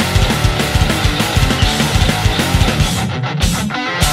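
Skate-punk band recording: distorted electric guitars over driving drums and bass. Near the end the cymbals and high end drop out briefly, a short break in the arrangement.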